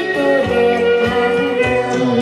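Guitar music playing through the speakers of a Toshiba RT-8700S (BomBeat X1) radio-cassette boombox, with bass notes landing about twice a second.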